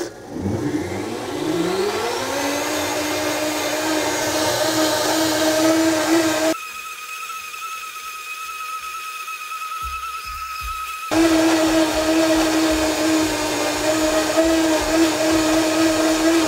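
Blendtec blender motor spinning up over about two seconds to a steady high-speed whine, churning hot liquid egg mixture that friction alone is heating toward cooking. For about four seconds in the middle the sound goes thinner and quieter, then returns full.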